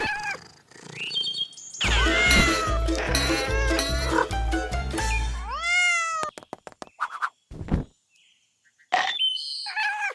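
Cartoon cat meows laid over playful background music, the longest one rising and then falling about five and a half seconds in. A quick run of clicks follows about six seconds in.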